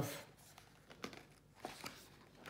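A hardcover picture book's paper page being turned by hand: a faint rustle of paper with a few soft ticks.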